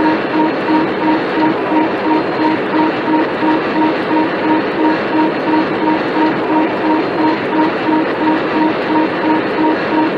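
Cockpit warning alarm beeping rapidly, about three beeps a second, over steady cockpit noise in a cockpit voice recording.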